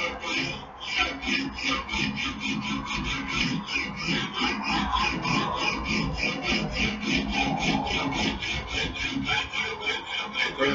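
Hand file rasping quickly back and forth along a steel axe edge as the edge is sharpened, about four strokes a second, with a short pause just after the start.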